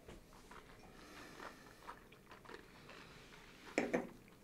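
Faint sipping and mouth sounds of whisky being tasted from nosing glasses, with small wet clicks. Near the end come two louder knocks as a tasting glass is set down on the wooden tabletop.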